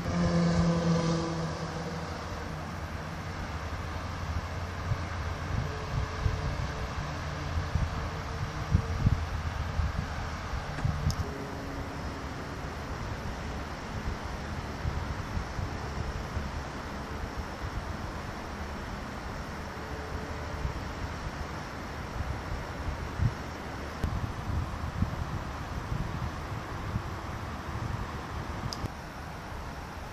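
Wind buffeting the microphone in uneven low gusts over a steady hiss of distant road traffic, with one vehicle passing close by at the start, its pitch falling as it goes.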